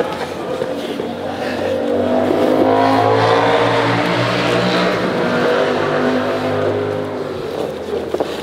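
A motor vehicle passing by, its engine growing louder over about three seconds and then fading away.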